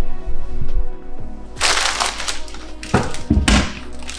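Plastic takeaway bag crinkling and rustling as it is handled, in several bursts from about one and a half seconds in, with a few dull thumps near three seconds, over background music.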